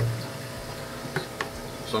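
Steady hum and water noise of a running reef aquarium and its protein skimmer pump. Two light plastic clicks come a little over a second in as the skimmer's collection cup is handled.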